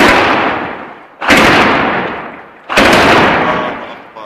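Three loud explosions about a second and a half apart, each sudden and dying away over about a second: shellfire striking a mosque minaret, the first blast as the shell hits the top of the tower.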